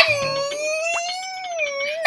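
A long, high-pitched strained cry from a woman, held for about two seconds and wavering slightly in pitch, as she exerts herself.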